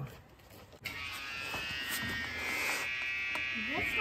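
An electric hydraulic brake pump starts suddenly about a second in and runs with a steady, high buzz, pushing fluid through the trailer's brake lines to bleed them.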